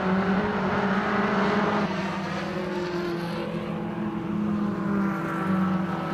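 BMW E36 Compact Cup race cars' engines running hard on the circuit, a continuous engine drone. The pitch dips over the first couple of seconds and climbs again from about two-thirds of the way in.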